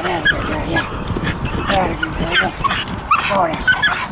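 Pit bull puppy whining and yipping in a rapid string of short, high calls while straining at her harness, the sound of a young dog in a high prey-drive state, going bonkers for the prey.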